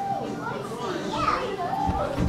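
Young children's voices babbling and calling out in short sounds, high-pitched and sliding up and down.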